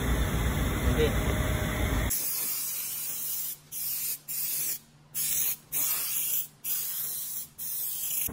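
Pneumatic underbody-coating gun spraying underseal from a screw-on can onto a car's underside: a high hiss in six or seven bursts of roughly half a second to a second and a half, broken by short pauses as the trigger is let go. It begins about two seconds in, after louder, rougher shop noise.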